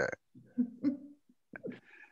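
A few short, low, guttural vocal sounds, a hesitant 'uh', heard over a video call, with dead silence between them.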